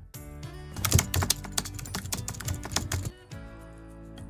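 Background music with a rapid run of keyboard-typing clicks lasting about three seconds, after which the music carries on alone.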